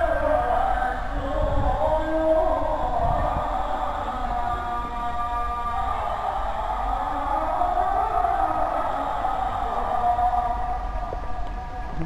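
Islamic call to prayer (ezan), the afternoon adhan, sung by a male muezzin in long, wavering, ornamented phrases held for several seconds each.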